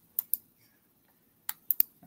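A few sharp clicks from a computer keyboard: two near the start and three in quick succession near the end, with near silence between.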